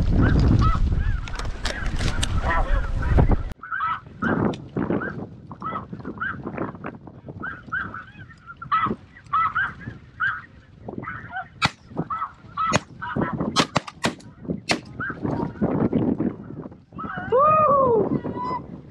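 Snow geese calling: many short, high honks repeating and overlapping, with a louder drawn-out call that falls in pitch near the end. Wind rumbles on the microphone for the first few seconds and cuts off suddenly.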